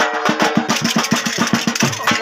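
Saraiki folk dance music, carried in this stretch by a fast, even drum beat of about eight strokes a second.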